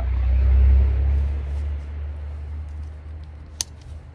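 A deep rumble, loudest in the first second and slowly fading, then a single sharp click near the end as a plastic side-release buckle on a strap snaps shut.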